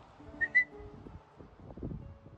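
A person whistling two short, quick notes about half a second in, calling a dog.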